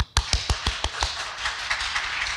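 Audience applauding: a few separate claps at first that quickly fill out into a steady round of scattered clapping.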